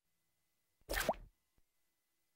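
A short cartoon 'plop' sound effect with a quick upward slide in pitch, about a second in, for the Big Idea logo.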